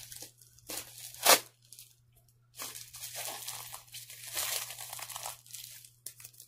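Packaging being unwrapped by hand: crinkling and tearing, with a sharp snap just over a second in, a short pause, then steady crinkling and rustling.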